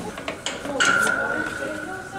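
Steel pipe being hand-cranked through the dies of a homemade pipe roller, with a steady high-pitched squeal starting a little under a second in.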